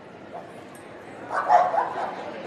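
A dog giving two short barks in quick succession about a second and a half in.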